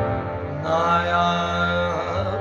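Harmonium playing in a live ghazal/Sufi performance, with a sung note that starts about half a second in and is held until just before the end.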